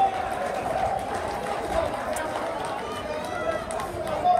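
Steady chatter of many overlapping voices from a crowd in a school gymnasium.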